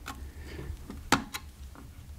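Small screwdriver tip prying at a glued ribbon cable connector on a circuit board: a few sharp clicks, the loudest about a second in.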